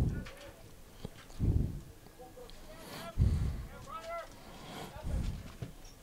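Distant shouts of soccer players calling to each other on the field, with several low, dull thumps.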